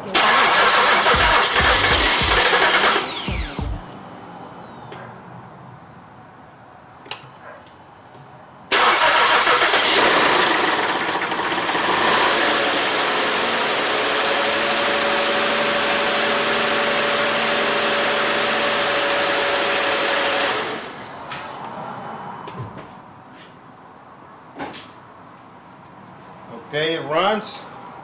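A 2008 Ford Edge's 3.5 L V6 turned over on the starter twice on its first crank after a head and water pump replacement, with oil added to the cylinders: a short burst of about three seconds, then a longer run from about nine seconds in that evens out into a steady sound with a held tone before it stops suddenly.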